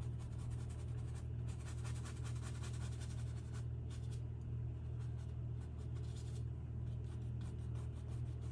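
Small paintbrush dabbing and stroking oil paint onto a stretched canvas: a quick run of light scratchy taps as white highlights go onto a painted wave's foam. A steady low hum runs underneath.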